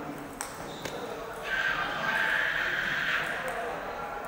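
A table tennis ball clicks sharply twice, off bat and table, in the first second. From about a second and a half in, a loud voice rises above the background chatter of the hall and holds for about a second and a half.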